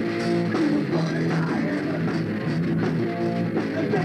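Live rock band playing: electric guitars through amplifiers over a drum kit, continuous and loud.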